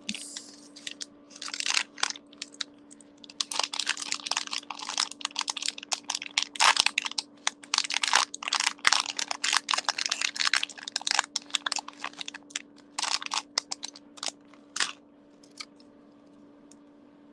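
Clear plastic bag of beads crinkling and crackling as it is handled, in irregular bursts with short pauses, stopping about a second before the end.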